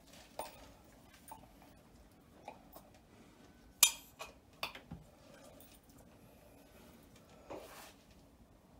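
Small hard objects handled on a countertop: scattered light clicks and clinks, with one sharp knock about halfway through followed quickly by a few smaller knocks, and a softer clatter near the end.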